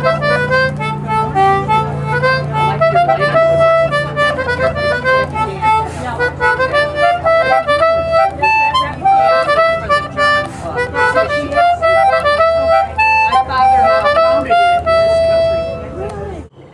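Two-row Anglo concertina playing a quick tune, its reeds sounding a fast run of melody notes over low chord tones, and ending on a long held note.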